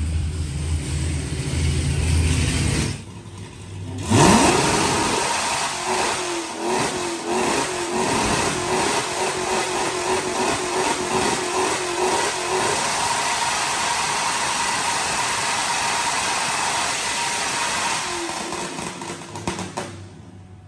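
Supercharged Hellcat Hemi V8 revving up hard about four seconds in and bouncing off a rev limiter set around 5800 rpm. The rapid popping and banging sounds like a machine gun for several seconds, then the revs fall away near the end.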